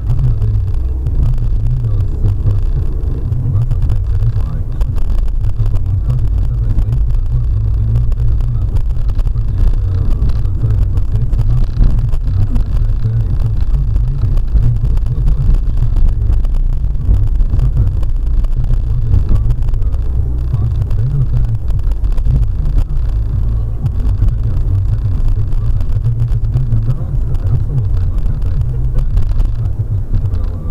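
Car driving at low speed, heard inside the cabin through a dashcam microphone: a steady low engine and road rumble.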